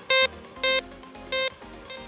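C.Scope 6MX analog metal detector giving three short mid-tone beeps as its coil passes over a piece of aluminium foil, each a little quieter than the last as the discrimination volume is turned down.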